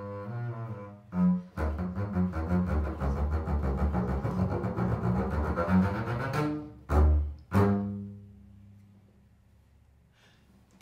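Solo double bass played with the bow: a few held notes, then a fast run of rapid notes, ending on two loud, separate notes about seven seconds in that ring out and fade away.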